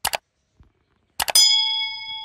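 A bell-like ding sound effect over dead silence: two quick clicks at the start, then about a second in a cluster of clicks and a bright ding that rings and fades over most of a second.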